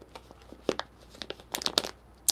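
A few soft, irregular clicks and crackles close to the microphone, most of them bunched together about one and a half seconds in.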